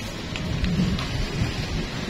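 Low, steady rumbling noise of wind buffeting the phone's microphone.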